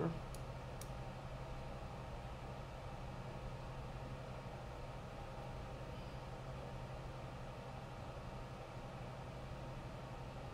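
Quiet room tone with a steady low hum, and two faint clicks just after the start.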